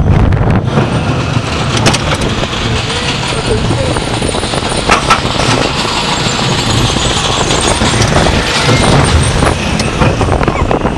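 Steel roller coaster train running fast through its course, heard from on board: a loud, steady rumble of the wheels on the track mixed with wind on the microphone, with a few sharp clacks along the way.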